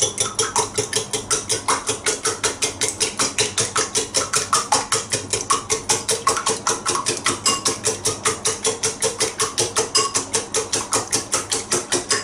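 Raw eggs and milk being beaten by hand in a ceramic bowl with a metal utensil: fast, steady strokes, about six a second, each clinking against the bowl.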